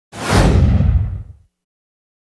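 An edited whoosh sound effect with a heavy low rumble. It starts suddenly and fades away about a second and a half in.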